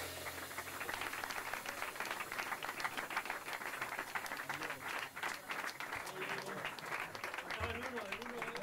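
Applause from a small seated audience of a few dozen, dense hand-clapping that starts to thin out near the end as a voice comes in.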